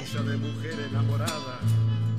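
Folk music with guitar: three low plucked notes held about half a second each, with short gaps between them.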